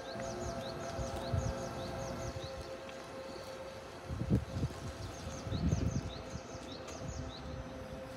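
Outdoor ambience: short high bird chirps repeat over a steady hum. A couple of low rumbles, wind or handling on the microphone, come about four seconds in and again about a second and a half later.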